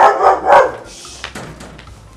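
A dog barking twice in quick succession, loud, within the first second.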